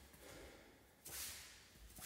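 Faint room tone with a sharp breath pushed out through the nose about a second in, fading quickly, and another starting at the very end.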